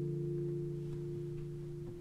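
Nylon-string acoustic guitar chord left ringing, its notes held steady and slowly fading away.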